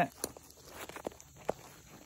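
Faint rustling of nylon webbing and a few light clicks as the shoulder-strap tabs of a 5.11 TacTec plate carrier are pulled out from under the shoulder pads.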